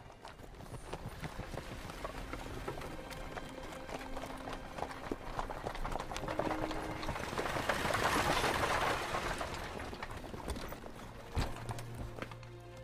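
Horse hooves clopping and a horse-drawn carriage rolling over dirt, growing louder to a peak about eight seconds in and then falling away, with one sharp knock near the end.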